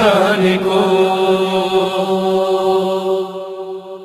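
Closing held note of a noha lament: a voice sustains one pitch after a brief waver at the start, fading out near the end.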